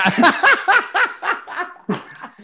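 Men laughing hard in a run of quick bursts, each with a rising-and-falling pitch, tailing off towards the end.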